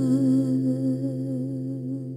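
A voice holding a hummed final note with a slow vibrato over a sustained chord, fading out as the song ends.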